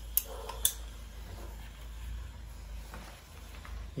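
Hand-cranked cast-iron corn mill grinding fresh, soft corn kernels: two sharp metallic clicks in the first second, then a faint, steady grinding.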